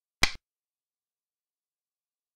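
A single short, sharp click: the move sound effect of a xiangqi piece being placed on the board.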